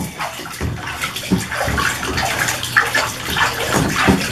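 Bath water splashing and sloshing in a tub as a baby slaps and paddles at it with his hands, in irregular bursts.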